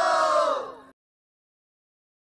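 The held closing note of a Rajasthani devotional bhajan, sung by voices, sliding down in pitch and fading out just under a second in. Dead silence follows as the recording ends.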